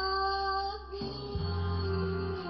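A woman singing one long held note into a microphone over a backing track; the note ends about a second in and the accompaniment carries on with a deep bass line.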